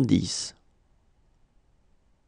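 A voice finishes a spoken word, ending in a hiss about half a second in, then near silence.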